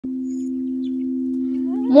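Singing bowl played by rubbing a mallet around its rim, giving one steady low ringing tone that holds without fading.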